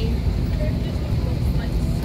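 Steady low rumble inside an airliner cabin parked at the gate, with faint passenger voices over it.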